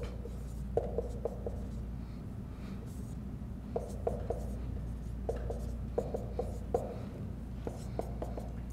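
Dry-erase marker writing on a whiteboard: short squeaking strokes in small clusters, over a steady low room hum.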